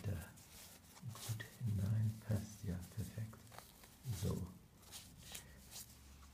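Low wordless muttering from a man, over light clicks and rustles of a cardboard box and a fabric pen case being handled.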